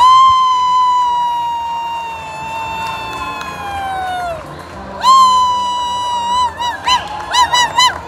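A spectator close by gives a long, loud, high-pitched whoop, held about four seconds and sliding down at the end. After a short pause comes another held cry that breaks into a quick run of short whoops, over a cheering crowd.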